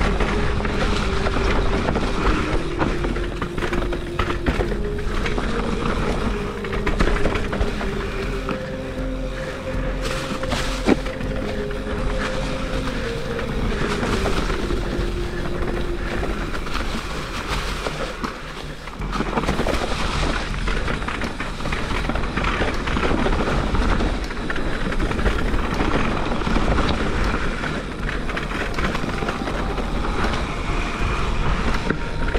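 Mountain bike riding fast down a dirt trail strewn with dry leaves: a continuous rushing noise of tyres on dirt and the bike rattling over the rough ground.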